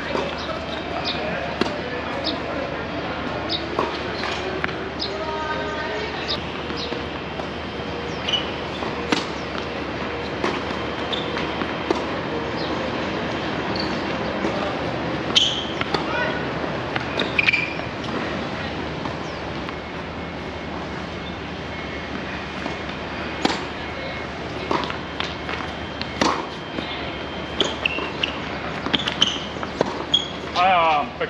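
Tennis rally on an outdoor hard court: tennis balls struck by rackets and bouncing on the court, heard as sharp pops at irregular intervals over a steady background noise.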